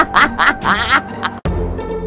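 A character's high, quick laugh, a run of short 'ha' bursts over background music, stopping about a second in. After a sudden break, only the music continues.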